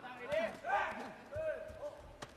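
Voices shouting in a large arena in short calls, with a short thud about a third of a second in.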